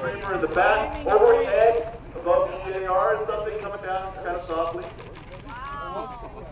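People talking, the words indistinct, fading out near the end.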